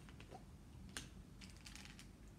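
Faint clicks and light rattles of a small object being handled in the fingers: one sharper click about a second in, then a quick run of light clicks.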